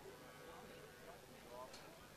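Near silence with faint distant voices.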